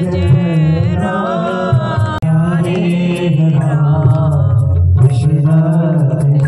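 Devotional Hindu singing over a loudspeaker: a voice sings a bhajan over a steady low instrumental accompaniment and a regular ticking beat. The sound breaks off for an instant about two seconds in.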